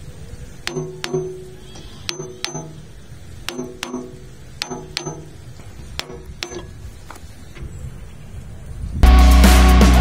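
Metal wrench clinking against the hand tractor's steel gearbox cover and shaft fittings: sharp clinks with a short ring, mostly in pairs about a second apart. Loud rock music starts abruptly near the end.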